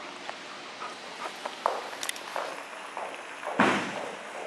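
Light, irregular taps and scuffs of an Airedale terrier's paws as she runs on a rubber mat floor during a game of fetch, with a louder short thump or scuff about three and a half seconds in.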